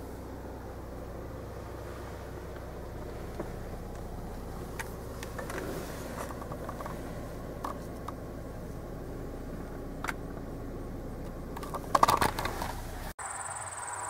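Steady road and engine noise inside a moving car's cabin, with a few light clicks and a louder clatter of handling noise near the end. After a sudden cut, insects chirp steadily in the last second.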